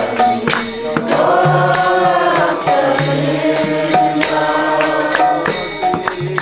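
Devotional kirtan: voices chanting a mantra in long, gliding sung phrases, with percussion keeping a steady beat and sustained low notes underneath.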